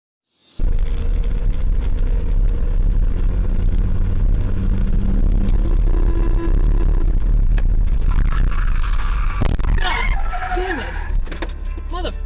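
Steady, loud low rumble of road and engine noise inside a moving car, starting abruptly about half a second in. Around ten seconds in, a brief high-pitched sound with a wavering pitch rises over it.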